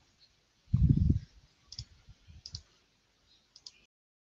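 A few light computer mouse clicks, with a short low thud about a second in.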